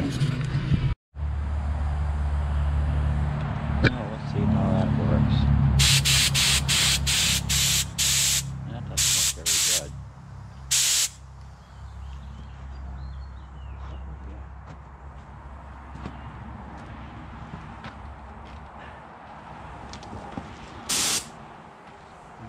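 Paint spray gun triggered in short hissing bursts: a quick run of them, then a few longer ones, and one more near the end. A steady low hum sounds under the first half.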